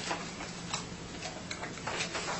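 Quiet room tone with a steady low hum and a handful of light, irregular ticks and clicks from papers and pens being handled on a meeting table.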